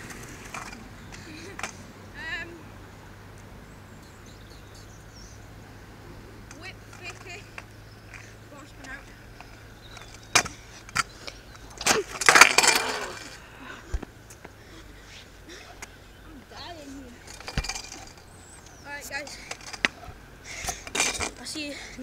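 Stunt scooter on asphalt: wheels rolling with sharp clicks as it comes down, then a loud scraping clatter of the scooter hitting the ground about twelve seconds in.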